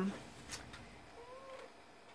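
A faint short animal call, a little past the middle, rising and then falling in pitch, after a soft click.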